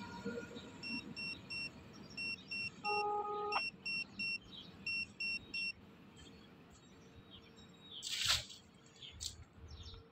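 Short high beeps in sets of three, four sets over about five seconds, over a faint background. A brief lower tone sounds about three seconds in, and a short whoosh comes near the end.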